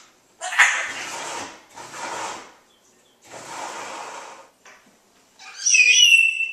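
African grey parrot making three breathy, raspy noises, then a loud whistled call falling in pitch near the end.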